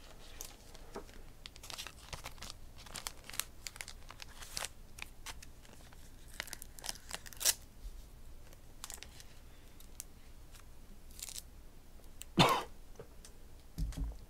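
Trading cards in plastic holders and sleeves being handled, giving scattered small crinkles and clicks through the first several seconds, then a single dull knock about twelve seconds in.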